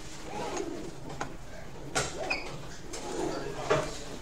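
Two sharp knocks, about two seconds in and near the end, over low indistinct room sounds as the lecture room is packed up.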